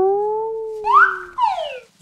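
Cartoon-style comedy sound effect added in the edit. A ringing electronic tone bends slightly in pitch and fades. Then, about a second in, a quick whistle-like glide rises and slides back down.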